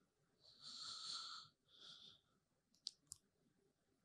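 Near silence with a person's faint breaths close to a microphone, one about half a second in and a shorter one at two seconds, followed by two tiny clicks about three seconds in.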